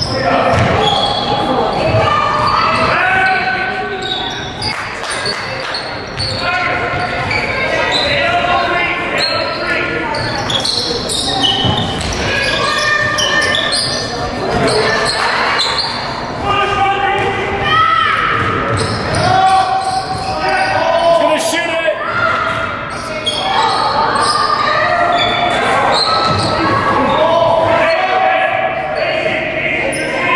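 Basketball game in a large gym: the ball bouncing on the hardwood floor as it is dribbled, with players and spectators calling out throughout, echoing in the hall.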